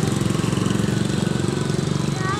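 A small engine running steadily with a rapid, even putter.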